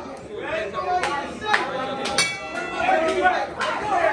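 Boxing ring bell ringing out once about halfway through, over crowd chatter: the signal that starts the round. A couple of sharp knocks come just before it.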